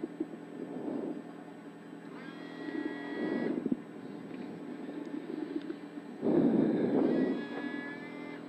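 Rally car engine idling at a standstill, heard from inside the cabin as a steady drone. A higher whine comes in twice, and the sound swells for about a second around six seconds in.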